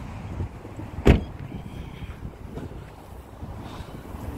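A car's rear passenger door shut once with a single solid thud about a second in, over a steady low rumble of outdoor air.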